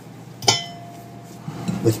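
A glass mixing bowl clinks once about half a second in and rings briefly, struck while hands work dough in it.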